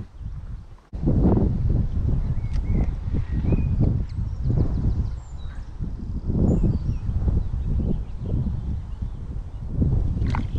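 Irregular low rumbling and thumping on a body-worn camera's microphone, about two pulses a second, starting suddenly about a second in, with a few faint bird chirps above it.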